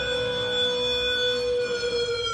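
A single long, held synthesizer tone in the band's live music, drifting slightly down in pitch like a siren, carried over the stage sound system.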